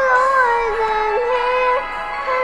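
A young child singing in a high, clear voice, holding long notes that step down and back up with small slides between them, then pausing for breath near the end.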